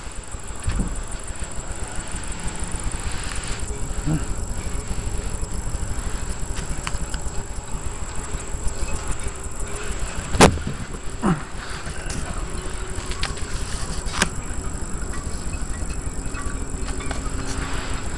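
Wind buffeting the microphone, a steady fluttering low rumble, with a sharp knock from handling about ten seconds in and a lighter one a few seconds later.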